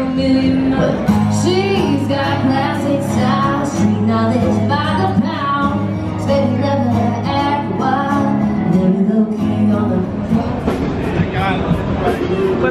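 Live country music: a woman singing to acoustic guitars over a steady low bass line.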